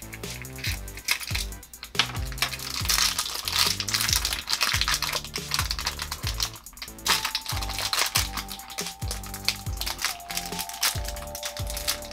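Background music with a steady beat, over the crinkling of a thin plastic blind bag being torn open and unwrapped by hand.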